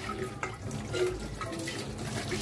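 Tap water running and splashing off a stainless steel pot being rinsed under the faucet in a kitchen sink.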